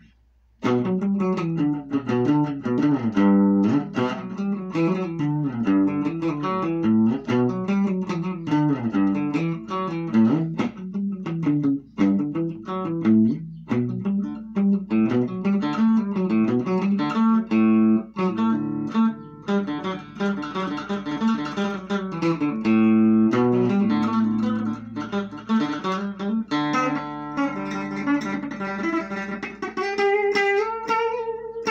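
Telecaster-style solid-body electric guitar being played: a continuous run of picked single notes and chords, with a short break just after the start.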